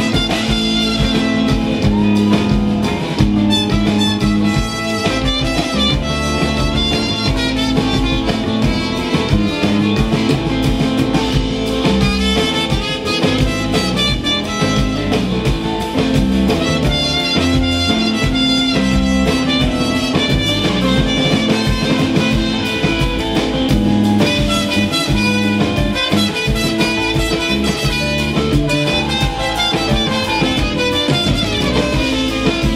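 Live folk-rock band playing an instrumental passage without vocals: strummed acoustic guitar, electric guitar and drum kit, with concert harp and trumpet.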